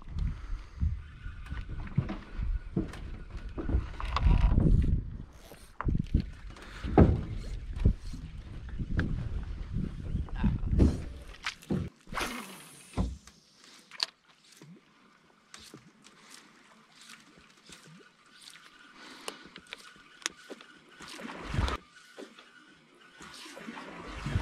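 Water lapping and knocking against the hull of a small boat, with scattered clicks and knocks. A low rumble drops away about halfway through, leaving only light clicks.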